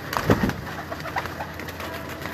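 Domestic pigeons cooing and shuffling on a loft roof, with a short low flutter of wings flapping about a quarter second in.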